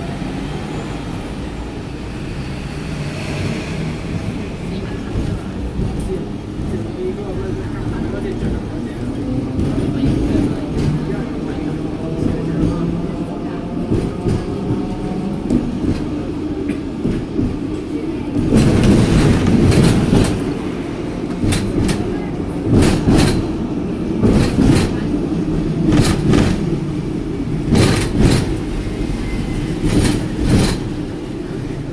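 Hong Kong double-decker tram running along its street tracks, heard from the upper deck: a steady low rumble of motor and wheels on rail. About two-thirds of the way in it grows louder, and a string of sharp clacks from the wheels on the rails follows.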